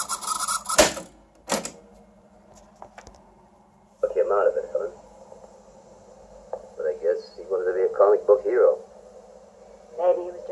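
Sanyo Betacord Betamax VCR fast-forwarding a tape, the cassette making a loud rasping noise, cut off about a second in by the clunk of a piano-key control, with a second clunk shortly after. From about four seconds in, film dialogue plays from the TV's speaker over a faint steady hum.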